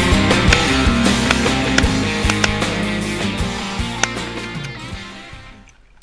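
Background song with guitar and a steady drum beat, fading out toward the end.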